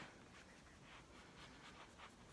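Near silence, with faint rubbing of fingertips on the skin of the cheek as blush is blended in.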